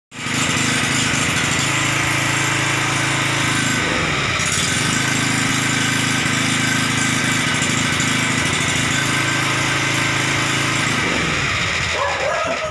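Small 1 kVA air-cooled petrol portable generator (Pelican MLT 1000) running steadily and loudly, its pitch dipping briefly about four seconds in and sagging near the end.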